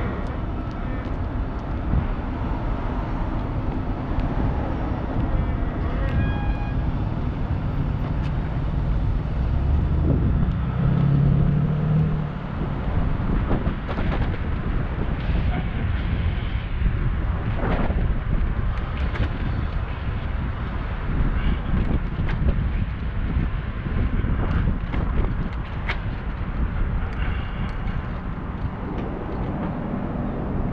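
Wind rushing over a bicycle-mounted action camera's microphone while riding, with city car traffic running alongside. A vehicle's engine hum stands out about ten seconds in.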